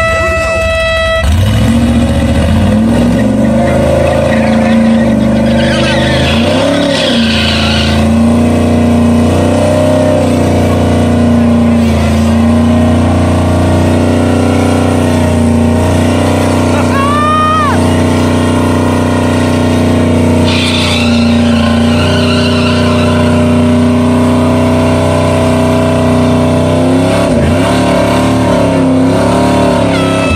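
A brief air horn blast, then a Chevrolet Chevelle's engine is held at high revs through a tyre-smoking burnout. The revs dip and climb again several times.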